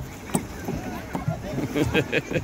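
Short knocks and low thumps from a playground tire spinner turning as it is pushed round by hand, with a child laughing near the end.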